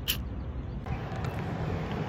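Outdoor street background: a steady low rumble of traffic with some wind on the microphone, and one short click just after the start.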